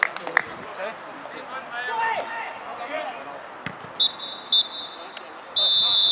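Referee's whistle blown for full time: two short blasts about four seconds in, then a long, loud blast near the end.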